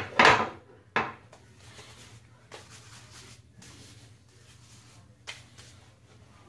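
Shaving brush working hard-soap lather in a shave scuttle. Two sharp knocks come in the first second, then a faint swishing with a few soft clicks.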